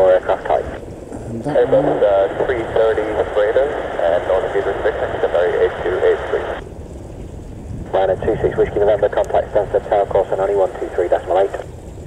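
Air traffic control radio transmissions: narrow-band voices over the airband receiver, in three stretches with short breaks about a second in and around seven seconds in.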